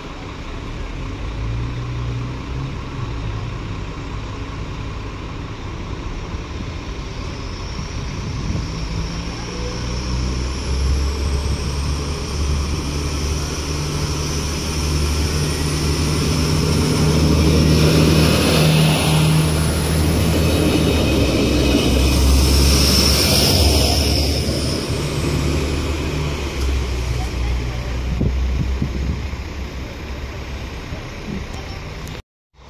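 Alstom Coradia LINT 54 diesel railcar (DB class 622) coming along the platform and passing close by. Its diesel engines run at a steady low pitch and grow louder to a peak at about two-thirds of the way through, then ease off. A high thin squeal from the running gear is heard over the middle of the pass.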